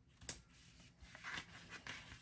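Faint paper rustling and light taps as a sticker sheet is handled and slid across a planner page, with a small click about a quarter second in.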